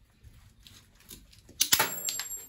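Bolt cutters snapping a hardened 6 mm steel chain link of a BTwin chain lock: faint strain, then a sudden loud crack about one and a half seconds in, with a brief metallic ring. The link bursts apart under the jaws rather than being cleanly cut.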